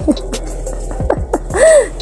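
A woman's brief laugh just after the start and a short gasp-like vocal sound, rising then falling, near the end, over background music.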